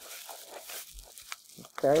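Plastic bubble wrap crinkling and rustling as it is handled and unwrapped, with scattered small crackles.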